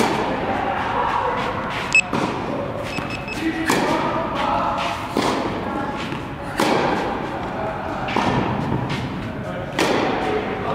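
Tennis balls struck by rackets in a rally, a hit or bounce roughly every second and a half, ringing out in an indoor tennis hall.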